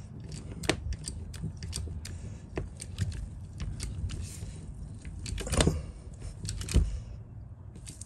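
Hand-operated hydraulic crimping tool being pumped to crimp a lug onto a heavy battery cable: a run of uneven metallic clicks and knocks from the handle strokes, the loudest a little after halfway and just before the end.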